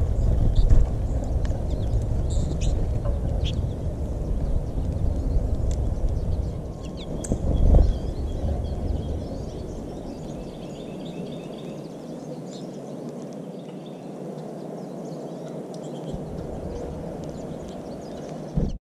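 American goldfinches at a feeder giving short, high chirps, scattered through, with a run of quick notes in the middle. Under them runs a low rumbling noise, heaviest in the first half, with swells about a second in and about eight seconds in, that drops away after about ten seconds.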